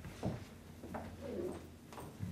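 Faint sounds of people moving and murmuring as an audience settles into seats, over a low steady hum, in a quiet room.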